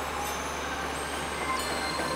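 Animated ice-factory machinery: a steady mechanical rumble with a constant low hum as a conveyor carries a box into the ice-making machine.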